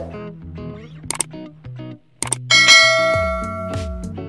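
Background guitar music with a subscribe-button sound effect over it: sharp clicks about a second in and again just after two seconds, then a bright bell ding that rings on and fades.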